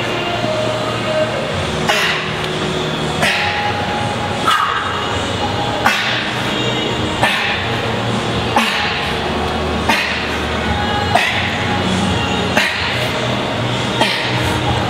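A man's short, forceful breaths blown out through the nose, about ten in a row, roughly one every second and a half, one with each fast push-up on an oil drum. Background music with a steady bass runs underneath.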